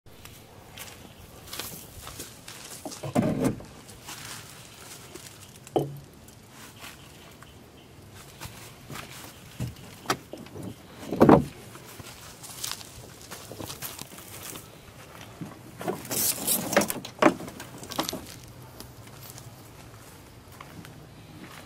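Footsteps in dry grass and leaves with scattered knocks and clunks as gear is handled in a canoe; the loudest knock comes about eleven seconds in, with a cluster of knocks and rustling near the end.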